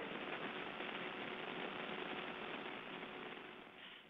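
Steady hiss of an open space-to-ground voice link, with a faint steady hum under it, while the answer from the space station is awaited. The hiss fades and cuts off at the end.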